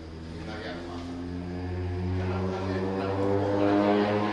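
A man's voice speaking, lecturing to a room, growing louder toward the end.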